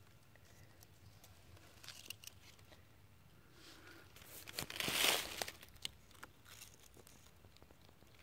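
A brief rustling, crinkling sound about five seconds in, amid faint scattered crackles and clicks.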